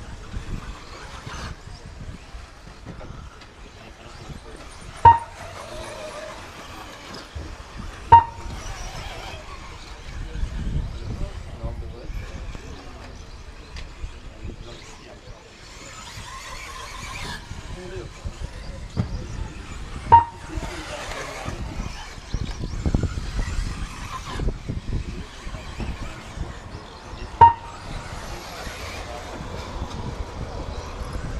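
Short, sharp electronic beeps, four of them several seconds apart, from an RC race lap-counting system as cars cross the timing line. They sound over a steady outdoor background with voices.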